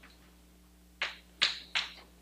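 Chalk writing on a blackboard: three quick, sharp chalk strokes in the second second.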